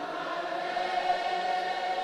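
A congregation singing softly together, many voices blended into one faint, steady sound.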